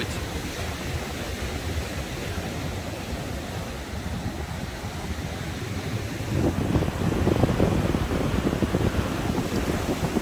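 Rough surf washing onto a sandy beach, with wind buffeting the microphone. The gusty rumble grows louder about six seconds in.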